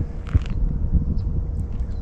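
Low rumbling noise with a few faint clicks: wind and handling noise on a body-worn action camera as a lure is reeled in on a baitcasting reel.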